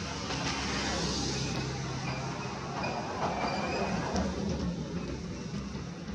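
A steady low mechanical rumble, like a vehicle engine running, with a few faint high chirps near the middle.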